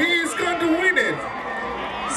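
A male commentator's voice calling the finish of a relay race.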